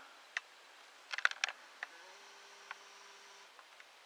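Handling noise from a handheld camera: a few sharp clicks and taps, most of them bunched together about a second in, with a faint steady hum for just over a second in the middle.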